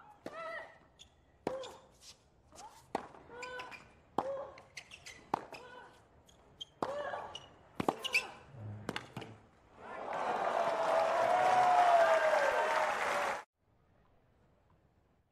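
Tennis rally: sharp racket strikes on the ball roughly every second, most followed by a short grunt from the hitting player. From about ten seconds in, the crowd applauds and cheers, louder than the rally, until the sound cuts off abruptly near the end.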